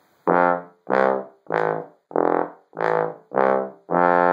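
F contrabass trombone playing an F major arpeggio in first position: seven separately tongued notes, nearly two a second, the last held a little longer.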